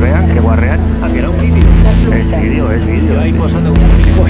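A voice over a steady drone of low sustained tones, with a brief hissing swell about every two seconds.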